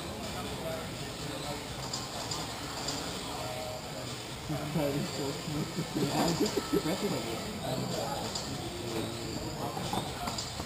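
People talking over the steady background noise of a large hall; the talk gets closer and louder about halfway through.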